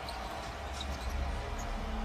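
Live basketball court sound: a basketball dribbled on the hardwood floor with faint sneaker noise, over a steady low arena rumble.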